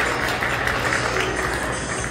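Audience applauding: many hands clapping at once in a steady patter.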